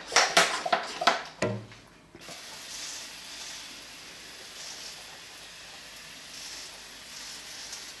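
A hand sprayer misting water into a reptile terrarium to add moisture, as a steady hiss from about two seconds in. A few short, louder noises come before it in the first two seconds.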